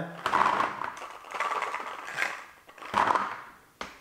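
Paintballs clattering as they drop out of a First Strike T15 magazine into a plastic tub of paintballs. They come in several rattling bursts, with a sharp click near the end.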